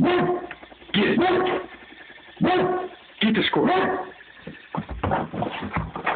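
Bullmastiff barking: about four short barks spaced roughly a second apart, then quieter, choppier sounds near the end.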